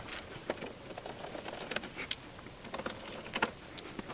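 Scattered faint clicks and light taps from hands handling a metal electronic instrument's case on a workbench.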